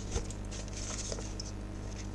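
Sheets of paper rustling as they are handled, with scattered small clicks and a soft knock shortly after the start, over a steady low electrical hum.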